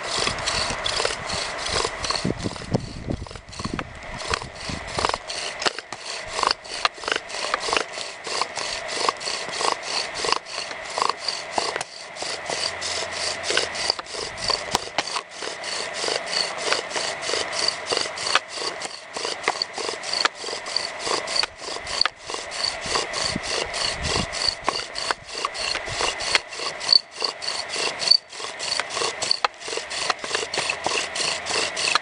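Bow drill friction fire: a willow spindle spun by a nylon-corded bow grinds into a willow hearth board, a rasping wood-on-wood rub in a fast, steady rhythm of back-and-forth strokes.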